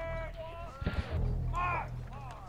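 Distant raised men's voices over a low steady rumble: a long drawn-out call at the start, then shorter calls at about a second and a half and near the end.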